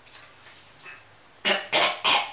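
A puppeteer's made-up voice for a giraffe hand puppet: a short, rough, squeaky vocal noise in two quick parts, starting about one and a half seconds in after a quiet start.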